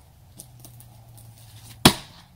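A single sharp, loud knock near the end: a hand-thrown, padded egg package in a cup strikes the house's siding.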